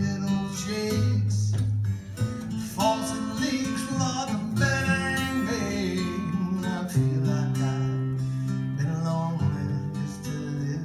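Acoustic guitar strummed and picked, accompanying a country-style song, with singing in places.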